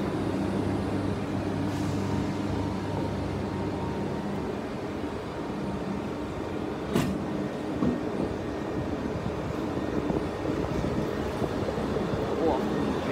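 SNCF BB 22200 electric locomotive (22232) moving past the platform with its passenger coaches behind it. A steady electric hum from the locomotive gives way to the rumble of the coaches rolling by, with a sharp clank about seven seconds in.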